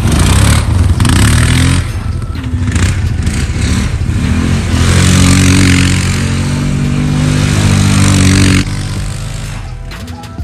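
ATV engine revving under throttle as the four-wheeler pulls away through tall grass, its note climbing and held high, then dropping off sharply near the end as it moves away.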